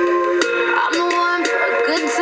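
Pop song playing: sustained keyboard chords under a processed lead vocal, with a light percussive hit about twice a second.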